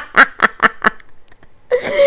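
A woman laughing heartily in a quick string of short "ha" bursts, about five a second, that fade out after about a second. Her voice comes in again, louder, near the end.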